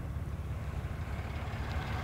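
Steady low rumble of the truck's 6.7-litre Cummins diesel idling, heard from inside the crew cab.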